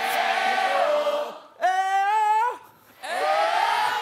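Call-and-response singing: a man holds a long sung note, and a group of voices sings it back. It happens twice.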